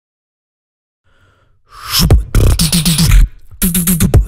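Beatboxing into a microphone, all sounds made by mouth. After about a second of silence and a faint lead-in, a rising swell opens into a hard-hitting beat of mouth kick drums, sharp high hits and a pitched bass line, with a brief break near the end.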